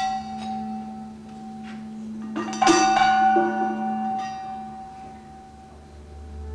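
Bell-like struck metal percussion in an improvised music performance: two strikes about two and a half seconds apart, the second louder, each ringing out and slowly fading over a low steady tone.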